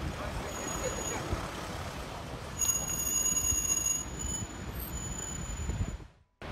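Street ambience of idling emergency vehicles and traffic with background voices. A steady high-pitched electronic tone sounds for about a second and a half midway, then continues more faintly.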